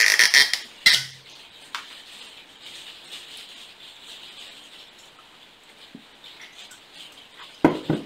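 Cork stopper being twisted out of a glass whisky bottle, a loud squeak with a sharp pop just under a second in, then faint pouring of whisky into a tasting glass, and a knock near the end.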